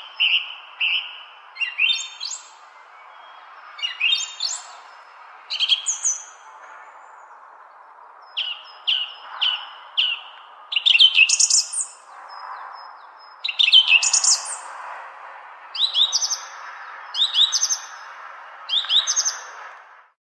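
A songbird singing short phrases of high chirps and trills, one every second or two, over a steady faint background noise.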